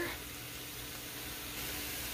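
Quiet room tone: a faint steady hiss with a faint low hum, and no distinct sound events.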